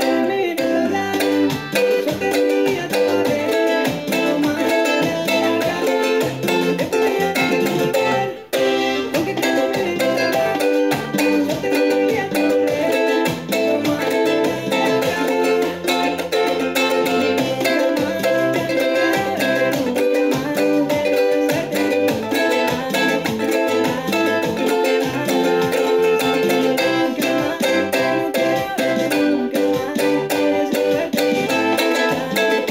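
Ukulele strummed in a steady cumbia-reggaeton rhythm, cycling through C, G, A minor and F chords, with a brief break about eight and a half seconds in.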